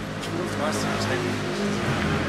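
A steady low hum of a motor vehicle engine running on the street, with faint voices over it.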